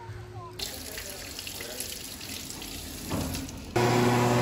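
Water running from a tap over hands at a washroom sink, a soft steady rush. Just before the end an electric hand dryer switches on with a loud, steady hum.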